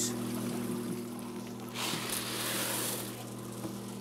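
Water trickling over a steady low hum. About two seconds in, a rush of water lasting about a second as a container of eggs in water is poured into a fish egg sorter's hopper.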